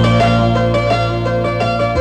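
Background film music: quick, light plucked-string notes over a sustained low bass note.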